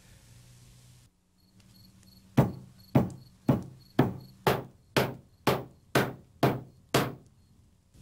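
Dough being pounded on a wooden board, about ten evenly spaced blows at roughly two a second, each ending in a short, dull decay.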